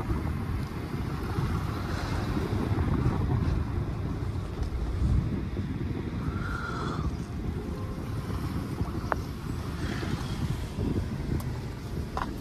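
Car in motion heard from inside: steady wind rushing over the microphone at the side window, over a low road and engine rumble.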